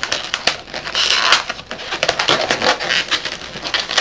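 Latex twisting balloons being handled, twisted and pulled against each other: a dense run of rubbing squeaks and crackles.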